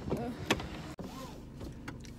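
A car door being handled, with one sharp click about half a second in, then a faint steady low hum.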